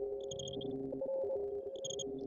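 Electronic logo jingle distorted by audio effects: two steady low tones held together, with short high beeps, three quick ones near the start and two near the end.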